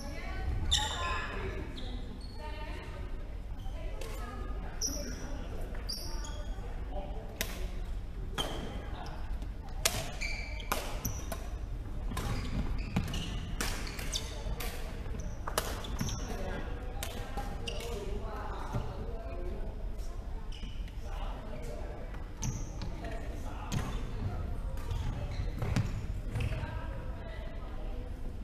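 Badminton rally: rackets striking a shuttlecock again and again at irregular intervals, sharp hits ringing in a large hall, with footsteps on the wooden court and voices from around the hall.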